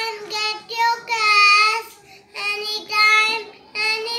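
A young girl singing alone, in short phrases of steady held notes with pauses between.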